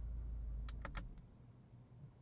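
Low, steady hum in a car cabin that fades out about a second in, with three faint short clicks just before it stops.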